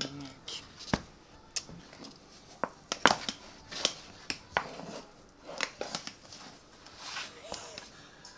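A metal spatula scraping and knocking against the side of a round metal deep-dish pizza pan as a stuck, baked crust is pried loose, heard as irregular sharp clicks and taps.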